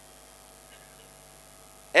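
Faint steady electrical mains hum with low background hiss during a pause in a man's speech. The speech starts again right at the end.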